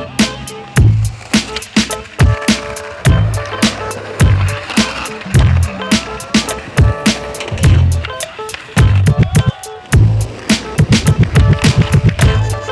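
Soundtrack music with a steady drum beat: deep kick-drum hits and sharp snare and hi-hat strikes over held musical notes. Skateboard wheels rolling and boards landing are mixed in under the music.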